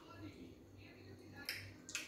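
Wet mouth smacks and chewing of people eating fufu with ogbono soup by hand, with two sharp smacks close together near the end.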